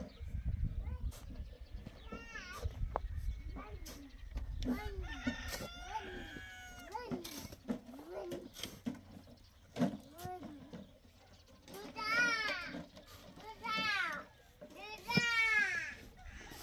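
Chickens calling, with a rooster crowing three times, loud and long, in the last few seconds.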